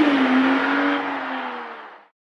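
Car engine sound effect running with a slowly wavering pitch, fading out steadily to silence by the end of a song's outro.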